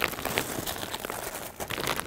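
Clear plastic wrapping on packs of yarn cakes crinkling as the packs are handled and shifted, a string of irregular small crackles.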